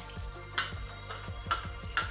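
Background music with a steady beat, over a few short scratchy strokes of a small cleaning brush scrubbing debris off the plastic filter and tank parts of a wet-dry vacuum: about half a second in, and twice in the last half second.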